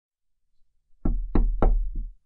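Knocking on a door: four knocks, about three a second, the last one softer.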